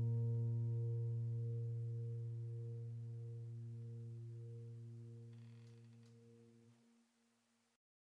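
The last low piano chord of a slow, soft piece ringing out and dying away steadily, fading out completely about seven seconds in.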